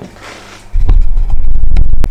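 Handling noise of a camera being picked up and carried. A light rustle and clicks give way, about three quarters of a second in, to a loud, uneven, low rumble of hands and movement on the microphone.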